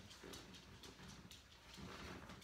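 Faint clicking of small dogs' claws on a hardwood floor as they walk about.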